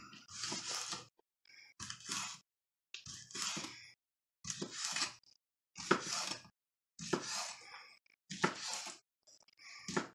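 Kitchen knife slicing smoked sausage into rounds on a wooden cutting board: about seven separate strokes roughly a second apart, each ending in a tap of the blade on the board.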